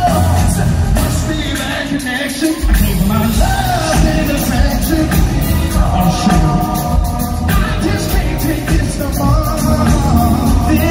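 Live R&B vocal group singing over a band with a heavy bass beat, recorded from the crowd at an arena concert; the bass drops out briefly about two seconds in.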